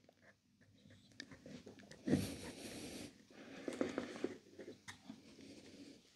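Faint clicks and creaks of pliers twisting and pulling a windscreen washer pump's small electric motor out of its plastic housing, with strained breaths of effort. A longer rasping sound comes about two seconds in, and another around four seconds.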